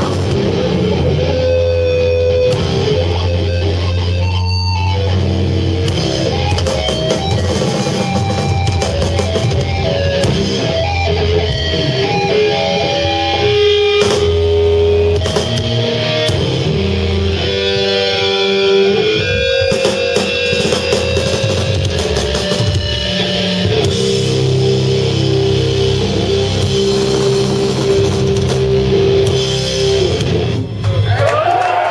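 Live sludge metal band playing loudly: distorted electric guitar riffs over bass and a drum kit, heard from the audience floor.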